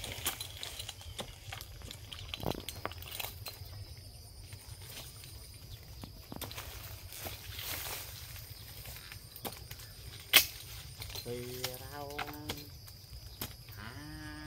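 Faint, scattered knocks and clicks of a tree climber's boots and gear against a eucalyptus trunk as he climbs, with one sharper click about ten seconds in. A faint steady high tone runs underneath, and a short voice comes in about eleven seconds in.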